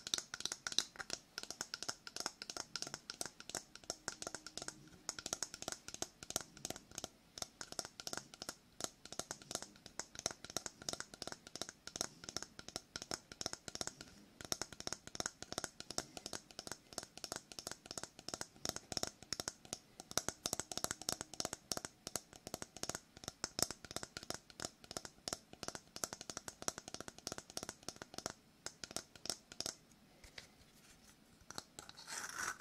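Fast fingernail tapping and scratching on a hard, round shell held close to the microphone: a dense run of crisp clicks and scrapes, many a second, with no pause.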